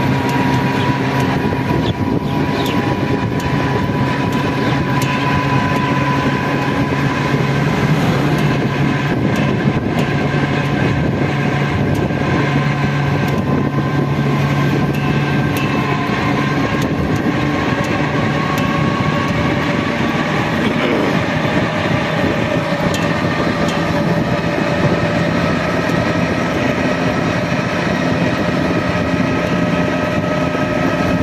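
Steady running noise of a three-wheeled auto-rickshaw cruising on an open road, heard from inside: road and wind noise with a steady hum and whine from the drive. The pitch shifts briefly about two-thirds of the way through.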